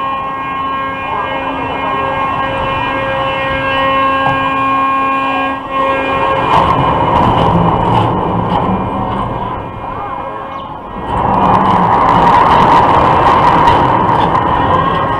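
A looping thrill ride running its car around a vertical steel loop track. A steady pitched whine is heard until about halfway through. After that comes a mix of rumble and rushing noise with a few clicks, which dips briefly and then swells loud near the end.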